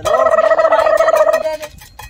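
Comic sound effect: a loud warbling, gobble-like tone with a rapid flutter, lasting about a second and a half, then a few faint clicks.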